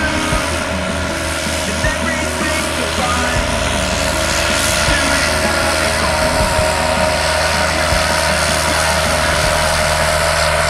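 John Deere tractor's diesel engine running steadily under load while working the soil, a loud, even drone with a fine regular firing pulse.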